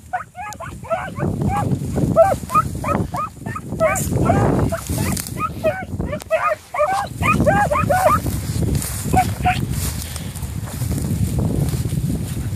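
Beagle hounds giving short, high barks while trailing scent through grass, several a second for about eight seconds, then two more a little later. Wind buffets the microphone throughout.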